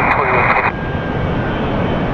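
Steady rushing jet-airliner engine noise with no clear tone, heard alone once an ATC radio voice stops, under a second in.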